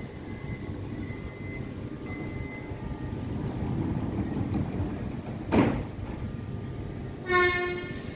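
Electric suburban train in an underground station, with a low rumble that grows as it gets under way. A sharp, loud burst comes a little past halfway, and a short, loud horn-like tone sounds near the end as the train moves off.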